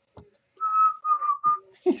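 A person whistling three short notes at nearly the same pitch, the middle one dipping slightly, lasting about a second.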